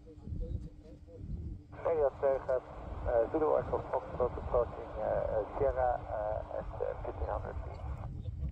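A voice transmission on an air-band radio, thin and narrow-sounding, starting about two seconds in and running on, over a low rumble.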